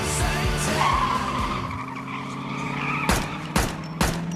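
The rock soundtrack gives way to a car's tyres squealing for about a second, then two sharp bangs half a second apart near the end: pistol shots.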